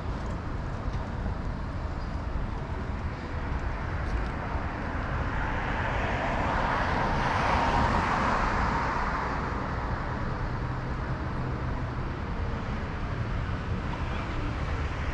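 Urban street traffic noise, with a car passing close by: its tyre and road noise swells and then fades, loudest about halfway through.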